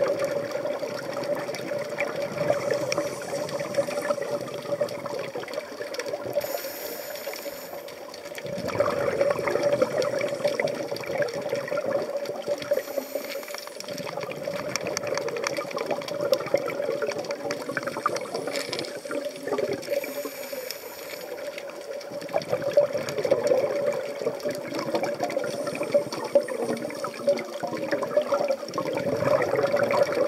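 Scuba divers' exhaled bubbles rushing and gurgling from their regulators underwater, swelling in surges, over a steady hum.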